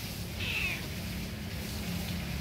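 A domestic cat gives one short, high meow with a slightly falling pitch, about half a second in, over a steady background rumble.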